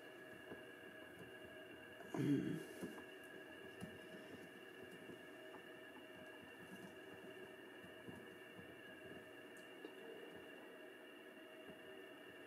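Faint handling sounds of fingers twisting a tight D-loop cord knot down a bowstring's serving, with a few small ticks over a steady faint hum. A brief louder sound comes about two seconds in.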